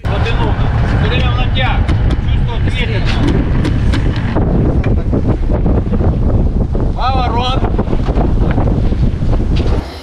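Wind buffeting the microphone aboard a sailing yacht under way, with crew voices calling out now and then, clearest about seven seconds in. The noise cuts off just before the end.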